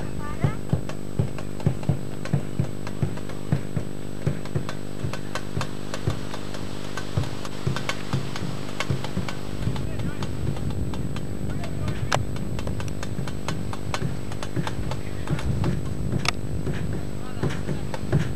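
A drum beating a steady rhythm of about two to three beats a second, with voices in the background and a constant hum underneath. The beat becomes less distinct about halfway through, giving way to denser low noise.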